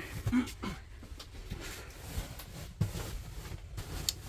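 Mattress and foam cushion being shifted and pushed into a bed frame: faint rustling of fabric with a few soft knocks.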